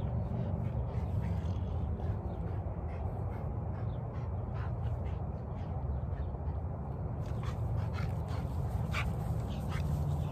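American Bully dog panting hard, a run of short breaths over a steady low rumble: the dog is exhausted from exercising in a weight vest.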